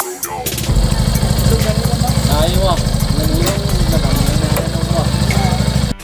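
Yamaha FZ-S motorcycle's single-cylinder engine idling steadily, with a man's and a woman's voices talking over it.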